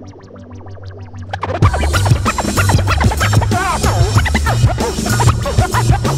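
Hip hop beat with turntable scratching. A quieter, thinned-out stretch with steady ticking runs for about a second and a half, then the full beat and bass come in under quick, dense vinyl scratches.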